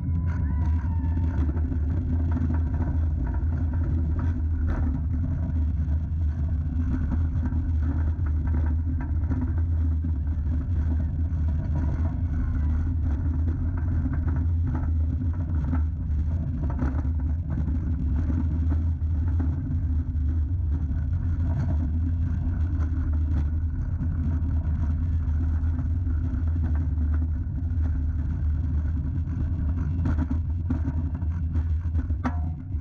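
Steel roller coaster train (a Bolliger & Mabillard floorless coaster) running along its track at speed, heard from the front seat as a steady, loud low rumble of wheels on rail mixed with wind rushing over the microphone.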